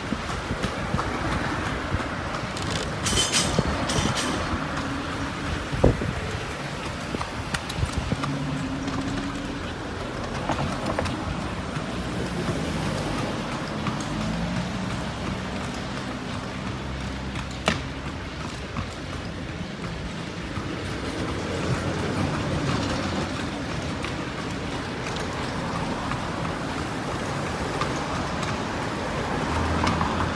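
A horse-drawn carriage rolling along a town street, its wheels on the road and the horse's hooves mixed with passing motor traffic. A motor vehicle's engine hum comes and goes around the middle. Sharp knocks stand out, the loudest about six seconds in and again about eighteen seconds in.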